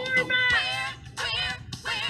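Music with an electronically processed, synthetic-sounding singing voice holding long, bending notes, broken by a short gap about a second in.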